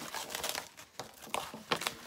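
Crinkling and rustling as things are rummaged through and handled, with a few short sharp clicks near the end.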